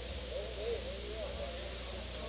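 Faint, indistinct talking in the background over a steady low hum.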